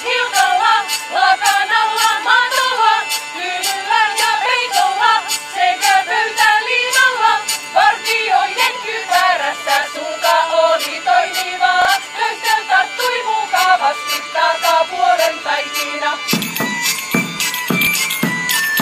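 Women's voices singing a folk song together to a medieval-style band: a hand drum and a tambourine beat about twice a second under a hurdy-gurdy's steady drone. Near the end the singing stops, and heavier drum beats with a high steady instrumental tone take over.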